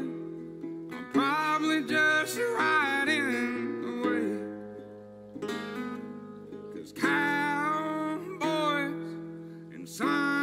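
A man singing a slow country song over a strummed resonator guitar with a twangy, banjo-like ring. The voice drops out about four seconds in, leaving the guitar on its own, and comes back about seven seconds in.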